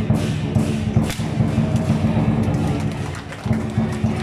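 Music playing with a steady low drone, over sharp wooden clacks of staffs striking; the loudest crack comes about a second in.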